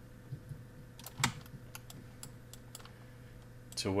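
Sparse clicks from a computer keyboard and mouse, a few of them about half a second apart, the loudest a little over a second in, over a faint steady hum.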